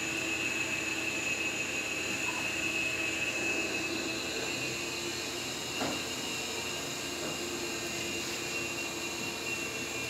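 A steady droning hum with a thin high whine running through it, and one faint click about six seconds in.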